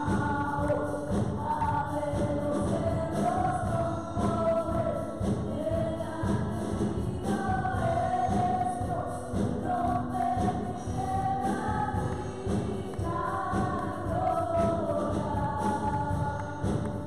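Female vocal group singing a gospel worship song together into microphones, backed by a live band with a steady drum beat.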